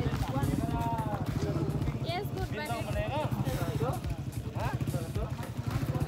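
People talking over the steady low rumble of an idling vehicle engine.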